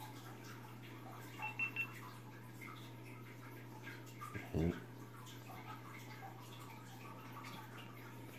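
GoPro Hero 5 Black action camera giving three quick high beeps as it powers on. A low steady hum runs underneath.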